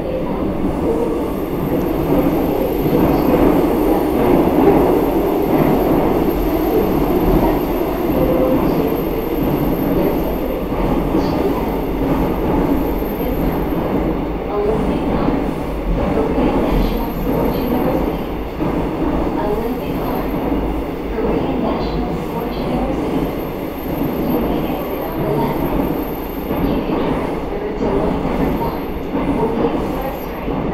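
Seoul Metro Line 9 subway train running between stations, heard from inside the car: a steady rumble of wheels on the rails and the traction motors, with a faint high whine on and off.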